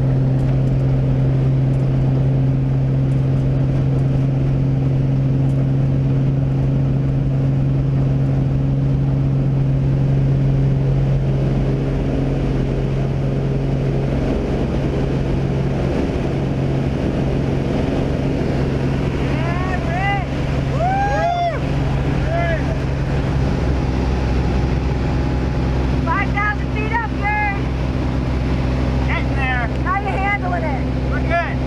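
Single-engine propeller plane running at high power on its takeoff run and climb-out, a steady loud drone with rushing air over it. Brief shouted voices break through the engine noise in the second half.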